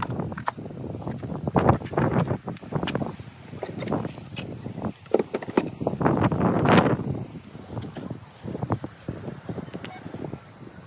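Irregular clicks, knocks and rustling from a charging cable being handled and plugged into the Tesla Model 3's charge port at an AC charger.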